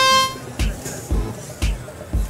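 Match-start horn sounding one steady tone that cuts off about a third of a second in. Background music with a steady beat of about two beats a second follows.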